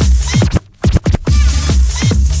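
Hard techno DJ mix with a kick drum hitting about twice a second. About half a second in, the music drops out, then stutters back in a few quick chopped bursts before the full beat returns.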